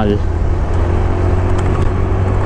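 Wind rumble on the microphone of a riding scooter, with the Honda Beat's small single-cylinder engine running steadily underneath.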